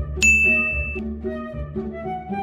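A single bright ding sound effect about a quarter-second in, ringing for under a second, over soft background music.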